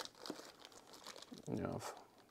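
Clear plastic parts bag crinkling faintly as hands lift it out of a parts box and turn it over.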